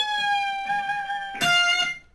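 Electric guitar on the high E string: a note bent up a whole step at the 15th fret rings on and is slowly released, its pitch sinking. About one and a half seconds in, a lower note is picked at the 13th fret.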